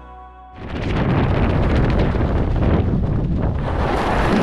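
Background music cuts off about half a second in. Loud wind then rushes and buffets over a helmet camera's microphone as a tandem parachute comes in to land.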